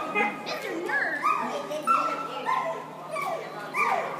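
A dog barking and yipping repeatedly, several short high calls in quick succession.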